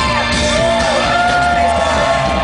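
Live rock band playing loud through a festival PA, heard from the crowd: a male lead singer holding long sung notes that slide between pitches over the full band.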